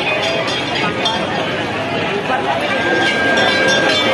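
Brass hand bells ringing, struck over and over, over the loud chatter of a dense crowd.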